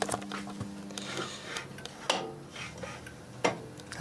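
Steady electrical mains hum from the meter test rig, which fades out about a second in, followed by a few light clicks and knocks of handling.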